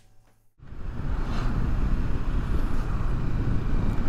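A motorcycle underway in heavy truck traffic, heard from the rider's camera: steady wind rush, road noise and engine sound that come in suddenly about half a second in, after a moment of near silence.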